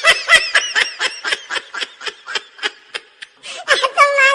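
A person laughing in a rapid run of high-pitched snickers, about five or six a second, loud at first, fading in the middle and picking up again near the end.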